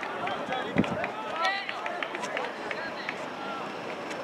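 Several voices shouting and calling out across an open soccer field, not close enough to make out words, with one dull thud about a second in.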